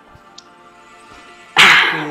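A dog barks once, loud and sudden, about one and a half seconds in, over faint background music.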